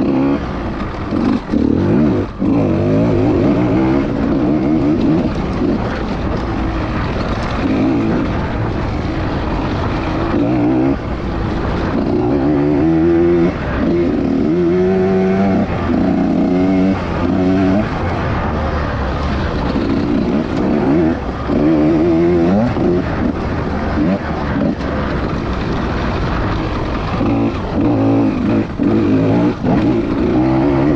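Husqvarna TE 150 two-stroke enduro motorcycle engine being ridden hard, the revs climbing and dropping over and over with throttle bursts and gear changes. There are a few brief throttle-offs.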